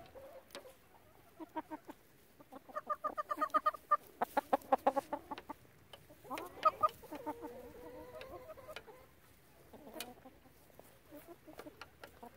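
Backyard chickens clucking as they feed, with a quick run of short repeated clucks from about a second and a half to five and a half seconds in, then a longer drawn-out call near eight seconds. A few sharp taps are scattered through.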